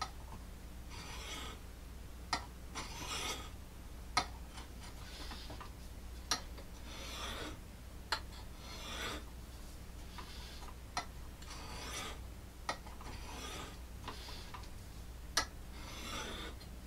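Knife blade drawn across an oiled Smith Tri-Hone sharpening stone in repeated rasping strokes, about one every one and a half to two seconds. Sharp clicks fall between some strokes.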